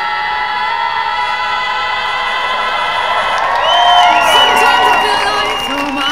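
A cappella choir holding a long chord, then high voices gliding over it as whoops and cheers rise from the crowd about four seconds in.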